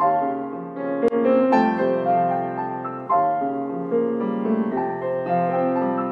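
Piano duet played four hands on a Steinway & Sons grand piano: sustained chords and melody, with notes struck and left to ring and fade in phrases about every second or two.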